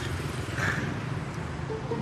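Steady low rumble of city street traffic, with motorbikes and cars passing.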